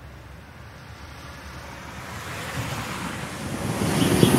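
A steady rushing noise that swells gradually louder, building like a sound-design riser.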